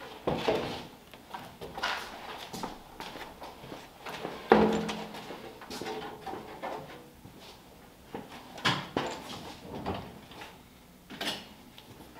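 Sheet-steel replacement firewall clanking and scraping against the car body as it is worked into the cowl, with scattered knocks and one louder, briefly ringing clank about four and a half seconds in.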